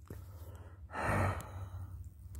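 A person's breath: one long, breathy exhale about a second in, close to the microphone, over a faint low hum.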